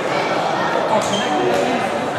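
Many overlapping voices of spectators talking in a large, echoing sports hall, with a couple of sharp taps about a second in and again shortly after.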